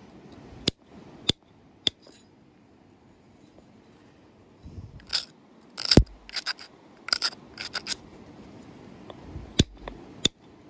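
Antler tine working the edge of a stone fishtail point: three sharp clicks in the first two seconds, then a run of quick scraping strokes with one loud sharp snap about six seconds in, and another click near the end.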